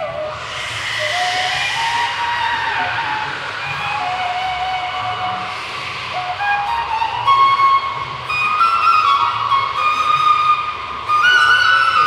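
Bansuri (side-blown bamboo flute) playing a slow melody of held notes that step up and down, very breathy near the start and again about halfway.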